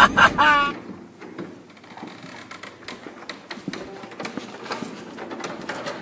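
Footsteps and scattered light clicks and rustles of people walking through a bare building on a concrete floor, with faint voices now and then.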